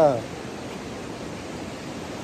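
Steady rush of a rocky mountain river flowing over stones, an even hiss with no pauses; a man's voice trails off just at the start.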